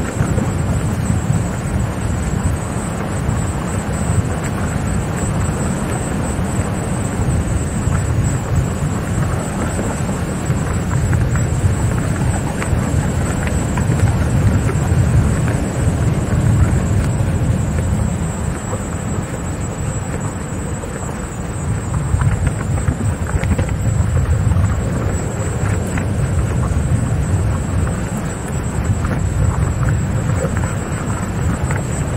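Wind buffeting the microphone of a 360 camera riding along on a moving electric unicycle: a steady low rumble, with a thin steady high whine above it.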